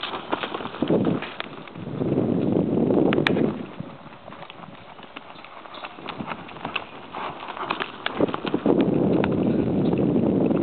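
Saddled mare cantering around a dirt round pen on a lunge line: a run of dull hoofbeats in the loose dirt. Twice, for a second or two, a louder rushing noise rises over the hoofbeats.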